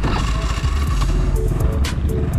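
Exhaust of a 2012 carburetted Honda Beat scooter's single-cylinder engine, revved with the throttle just at the start and then easing back. The engine is still stock and has not been worked on. Background music plays under it.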